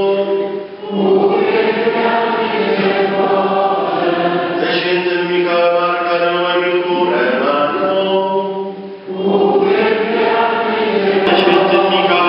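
A church congregation singing a slow, repetitive chant in unison, with a steady low note held underneath. The singing pauses briefly about a second in and again about nine seconds in, between phrases.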